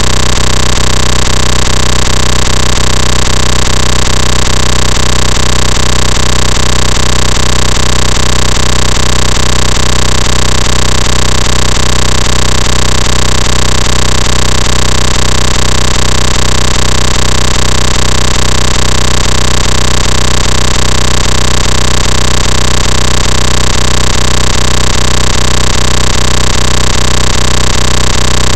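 A loud, unchanging buzzing drone at near full volume, with a faint rapid ticking running through it. It cuts in abruptly in place of the electric guitar music.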